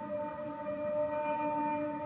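A double bass bowing a long, steady note in a slow dhrupad-style improvisation, with a held vocal tone blending into it. The note swells a little about halfway through.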